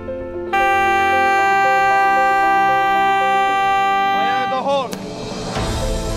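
A loud warning horn blows one long steady blast over background music, its pitch sagging and falling away as it stops. About a second later a deep rumble sets in as the underwater blasting charge goes off.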